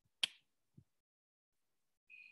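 A single sharp click, followed about half a second later by a much fainter low knock.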